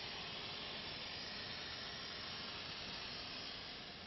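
Foam applicator spraying cleaning foam onto a wall: a steady hiss that eases slightly near the end.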